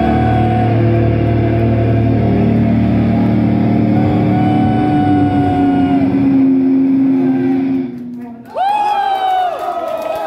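A thrash metal band's closing chord ringing out on distorted electric guitars and bass, with one low note sliding slowly down. It cuts off about eight seconds in and is followed by high, held wails, each starting with a downward slide.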